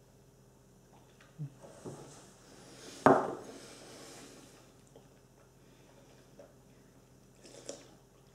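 Faint sipping and swallowing, then a whisky nosing glass set down on a wooden table with one sharp knock about three seconds in. The rest is quiet room tone.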